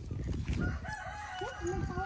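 A rooster crowing: one long call that starts about half a second in and is still going at the end, over low rustling of steps through grass and brush.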